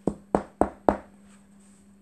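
Four quick knocks on a hard surface, about a third of a second apart, like knocking at a door.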